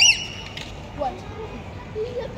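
A short, loud, high call that rises in pitch right at the start, with a fainter rising call about a second later, over quiet outdoor background noise.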